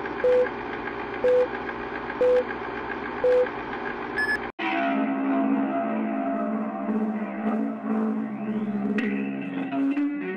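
Film-leader countdown beeps, four short steady tones about a second apart over a steady background hum, then a brief higher tone. After a sudden cut about halfway through, a short TV station ident music sting plays, with a rising sweep and a sharp hit near the end.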